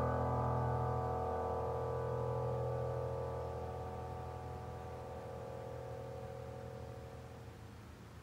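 A final piano chord from a recording, played back through Tannoy Kingdom Royal loudspeakers, sustaining as several steady notes and slowly dying away.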